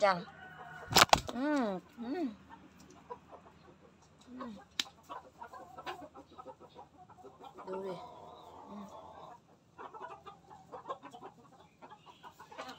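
Silkie chickens clucking, with a sharp knock about a second in, the loudest sound.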